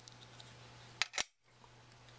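Two short, sharp clicks about a second in, a fraction of a second apart, from the small nylon disc hub and its magnet parts being handled and fitted together, over a faint steady hum.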